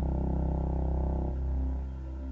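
Ambient synthesizer music played on Roland JV-80 synthesizers: a steady deep bass note under sustained pad chords, the upper notes changing a little past halfway.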